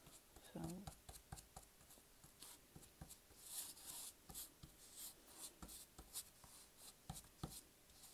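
Faint scratching of a nearly dry paintbrush's bristles dragged in short strokes across the rough wood of a miniature plank floor (dry-brushing white acrylic), with small clicks and taps in between; the scrubbing is loudest about three and a half seconds in.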